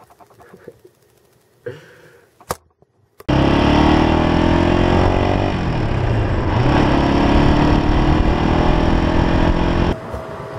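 1986 Honda XL250R dual-sport motorcycle's single-cylinder four-stroke engine heard from the rider's seat while riding, cutting in suddenly about three seconds in after a few faint knocks. Its pitch drops around the middle as the bike eases off, then climbs again as it pulls away.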